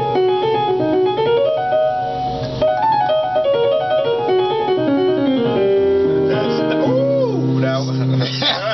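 Piano run over a C dominant chord (C, E, B-flat): a quick blues-scale figure built on E-flat, the sharp nine (E-flat, F-sharp, A-flat, A, B-flat, D-flat, E-flat, F-sharp). The notes climb and fall in fast steps, then come down onto a held chord near the end.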